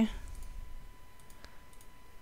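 A few faint computer mouse clicks spread over about two seconds.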